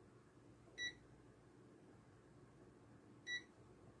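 Handheld digital multimeter (AstroAI) giving two short, high beeps about two and a half seconds apart as its buttons are pressed. Otherwise near silence.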